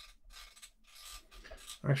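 Faint clicking and rubbing of the Empress Zoia's rotary encoder knob being turned by hand, its detents clicking irregularly. The encoder's contacts have just been cleaned with contact cleaner.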